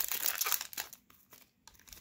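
Foil wrapper of a Pokémon card booster pack crinkling as hands pull it open, dense crackly rustling for about the first second, then a near-silent pause with a little more crinkling near the end.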